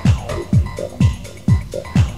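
Electronic dance music from a 1990s club DJ set: a deep kick drum on every beat, about two a second, with short synth stabs between the beats.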